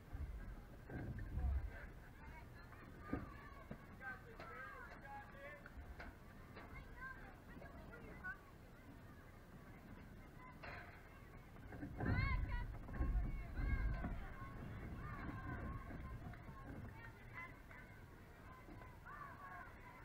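Indistinct voices of spectators and players chattering and calling out around a softball field, with a louder stretch of shouting about twelve seconds in.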